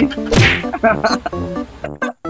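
One sudden whack, like a slap sound effect, about half a second in, over background music.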